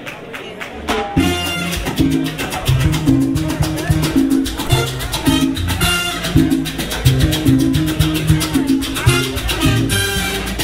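Live salsa orchestra playing, the full band coming in loudly about a second in over a quieter opening with some audience chatter.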